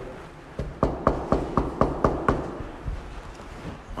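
Knuckles knocking on a door: a quick, even run of about eight knocks, about four a second, starting about half a second in and stopping a little after two seconds.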